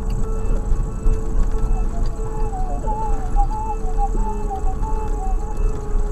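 Car cabin noise while driving slowly over a rough gravel track: a steady low rumble with a steady whine under it. From about two seconds in a thin wavering tune runs over it for a few seconds.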